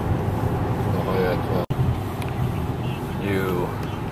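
Steady low road and engine rumble heard inside the cabin of a moving BMW M5, with a momentary dropout a little under halfway through.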